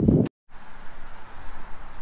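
Wind rumbling on the microphone, cut off abruptly by a moment of dead silence. A steady outdoor background hiss then runs on without words.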